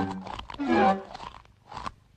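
Cartoon sound effects of chipmunks crunching popcorn, a few crunchy bursts, over an orchestral score playing sliding, falling notes.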